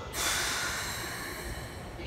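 A sudden burst of compressed air hissing out from a stopped Keikyu 1000 series train's pneumatic system, fading away over about a second and a half.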